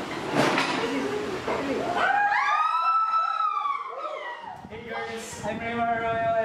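A person's high, drawn-out wailing cry that rises and falls in pitch for about two seconds, starting about two seconds in. It follows a short noisy burst and gives way to voices near the end.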